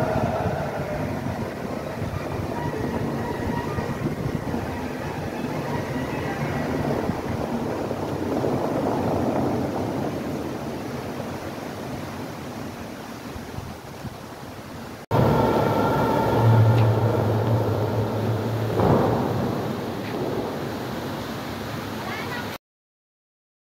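Fountain jets spraying, a steady rush of water with music faint behind it. About fifteen seconds in, the sound cuts abruptly to a louder stretch that carries a steady low hum for a few seconds.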